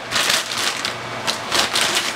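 Plastic bag crinkling and rustling in uneven bursts as a new BMX fork is pulled out of its wrapping.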